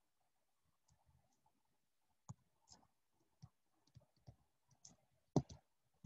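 Faint, scattered clicks, about eight over the last four seconds at irregular spacing, the loudest a little after five seconds in, with near silence between them.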